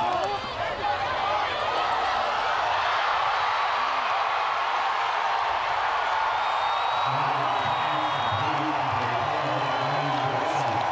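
Stadium crowd cheering, swelling about a second in to a loud, steady din during a long completed pass. A man's voice comes in over it in the last few seconds.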